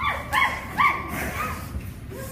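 Young children imitating puppies, giving short high-pitched yips and barks, the two loudest in the first second and fainter ones after.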